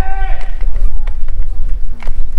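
A single drawn-out shouted call from a person's voice, held for about half a second at the start, over a steady low rumble with scattered faint clicks.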